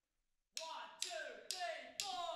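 A band's count-in: four sharp taps about half a second apart, each with a short falling ring, struck after a moment of silence.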